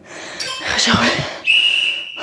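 Hard breathing, then a single steady high electronic beep lasting about half a second near the end: an interval timer signalling the start of a work set.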